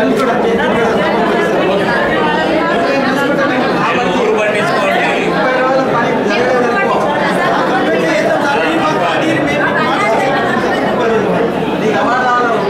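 Several people talking at once, their voices overlapping in a steady, loud chatter.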